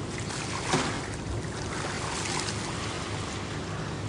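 Outdoor waterside ambience: harbour water lapping, with wind rushing on the microphone, and one brief louder splash-like noise about three-quarters of a second in.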